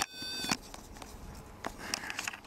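Quiet room noise with a short click about half a second in and a fainter one later.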